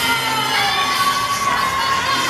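Audience cheering and children shouting over pop dance music, with one long high-pitched call held through the second half.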